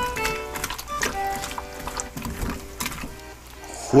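Background music with steady held notes, over faint wet squishing as hands knead salt into slimy monkfish skin in a stainless steel bowl to scour off its slime.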